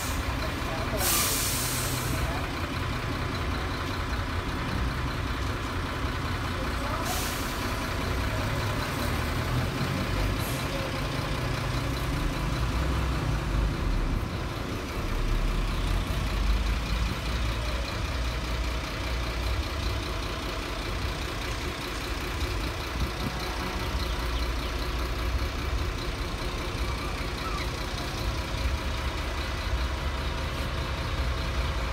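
Steady outdoor background rumble that swells and falls at the low end, with a short hiss about a second in and another about seven seconds in.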